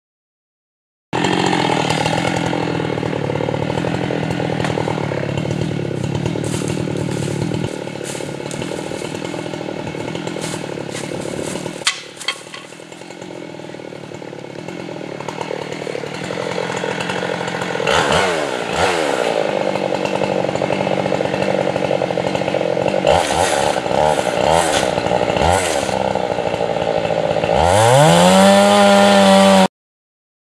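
Gasoline chainsaw cutting into the base of a large red oak during felling, running under load with its engine speed dipping and recovering as it works in the cut. Near the end the saw revs up in a rising whine to a high steady pitch.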